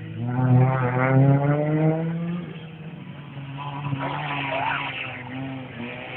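Rally car engine at full throttle on a special stage. The revs climb steadily for about two seconds, drop at a gear change about two and a half seconds in, then run lower and unevenly.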